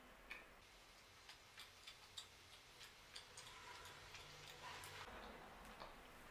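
Near silence with faint, soft clicks every few tenths of a second: a person chewing a chocolate-coated protein bar with the mouth closed.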